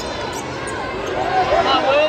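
Basketball game in play on a hardwood court: the ball bouncing and sneakers squeaking in short high glides, thickest in the second second, over steady crowd chatter in a large arena.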